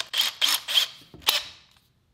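Makita 18-volt cordless drill run briefly at low speed while its keyless chuck is held by hand, closing the chuck onto a drill bit, with a few sharp clicks as the chuck tightens. The sound stops about a second and a half in.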